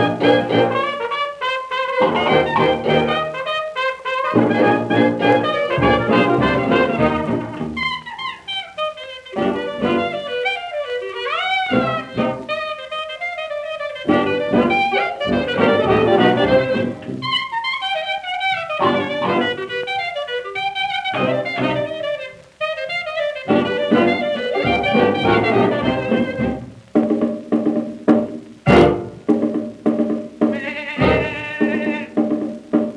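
1927 New Orleans-style hot jazz band recording: cornet, trombone, clarinet and alto saxophone playing over piano, guitar, brass bass and drums, with one note slurred upward about a third of the way through.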